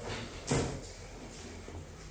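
Denim fabric rustling as a pair of short denim overalls is handled and turned over, with a brief louder rustle about half a second in and a fainter one shortly after.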